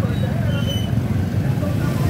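A motorbike engine running close by, a steady low hum, with faint scattered chatter of people behind it.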